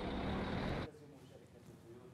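Steady city street traffic noise that cuts off abruptly just under a second in, leaving near-silent room tone.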